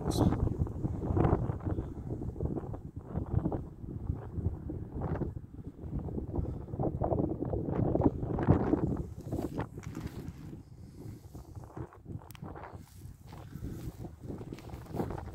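Wind buffeting the microphone in uneven gusts, a low rumbling noise that eases off after about ten seconds.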